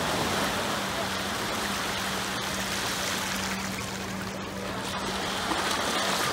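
Small waves breaking and washing over shallow water at the shoreline, a steady rush of surf that swells a little near the end as a wave rolls in.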